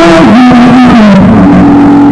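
Live acoustic blues performance with acoustic guitar, recorded at a very high level. A melody line slides down early on, then holds one long note from partway through.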